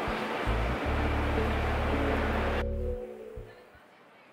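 Outdoor street noise with a low rumble, under background music; the street noise cuts off suddenly about two and a half seconds in and fades away, leaving only faint music.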